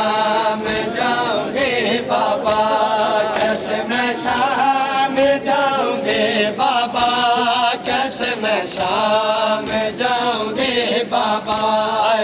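Men chanting a nauha (Shia mourning lament) in a loud, drawn-out melody, over a regular rhythm of hand strikes: mourners beating their chests (matam) in time with the chant.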